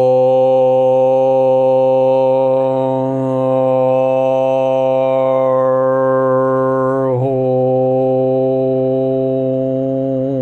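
A man chanting one long held note at a steady low pitch, the vowel shifting gradually partway through, with a brief waver about seven seconds in.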